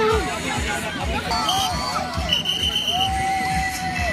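Many voices of players and onlookers shouting and calling out at once during an outdoor team ball game, with a brief high steady tone a little after two seconds in.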